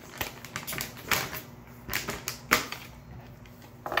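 A quick, irregular run of light clicks and taps, about a dozen in two and a half seconds, with one more near the end.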